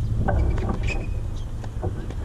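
Wind buffeting the camera microphone, a steady low rumble, with a few faint ticks and a short high squeak about a second in.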